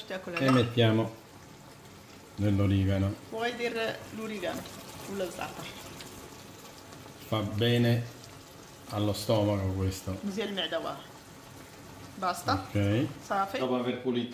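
Cherry tomatoes sizzling in oil in a frying pan, with a voice talking on and off over it.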